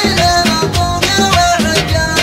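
Gulf Arabic sheilah: a male voice chanting a drawn-out, ornamented melodic line over a steady percussion beat.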